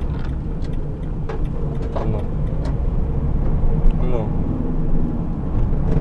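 Engine and road rumble heard inside a moving vehicle's cabin, a steady low hum that grows a little louder as the vehicle picks up speed.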